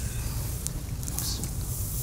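Steady low room hum in a lecture hall, with faint rustling and a couple of soft clicks from someone moving close to the microphone.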